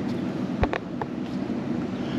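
Two short clicks of the TIDRADIO TD-H8 handheld radio's front-panel buttons being pressed, about half a second and a second in, the first with a low handling thump, over steady wind on the microphone.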